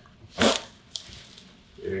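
Chiropractic thrust on the upper thoracic spine at the 2nd dorsal vertebra: one sudden, loud burst about half a second in, the joint releasing as air is pushed out of the patient's chest. A faint click follows a moment later.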